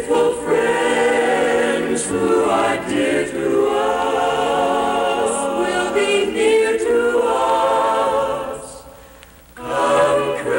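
A choir singing a slow piece. The voices fade briefly about nine seconds in, then come back in.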